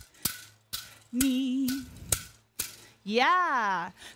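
Pu'ili, split-bamboo hula rattles, struck in sharp clacks about every half second, with a woman's voice holding a sung note with vibrato about a second in. Near the end her voice slides up and back down.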